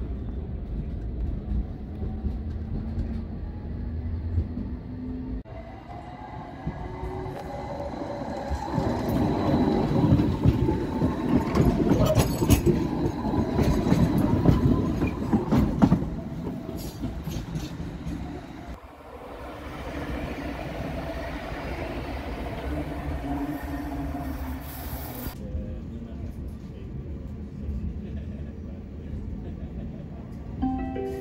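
Tram running on rails: steady rumble of the ride, louder for a stretch in the middle where a tram rolls by with wheel-on-rail noise and clicks over the track.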